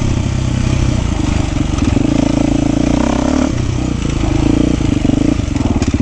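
Beta 390 Race Edition dirt bike's single-cylinder four-stroke engine under way on a trail, the exhaust note rising and falling with the throttle, swelling about two seconds in and easing back after about three and a half seconds.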